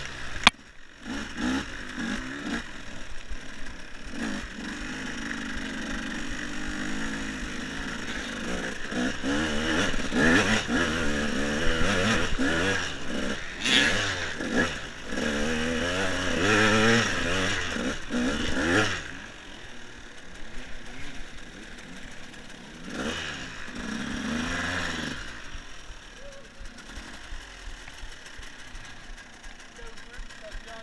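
KTM EXC enduro motorcycle engine revving and pulling on a woodland trail, its pitch rising and falling again and again and loudest in the middle stretch. After about two-thirds of the way through it drops to a lower, quieter running as the bike slows. A single sharp click comes right at the start.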